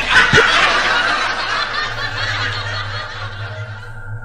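A burst of laughter that starts suddenly and fades away over about three seconds, over a steady low hum.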